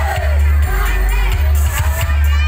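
Loud music with a heavy bass, and a crowd shouting and cheering over it.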